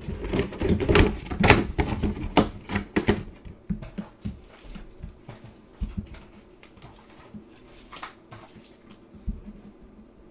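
Handling noise on a tabletop: a quick flurry of knocks and clicks from hard objects being moved and set down for the first three seconds or so, then occasional single taps and clicks.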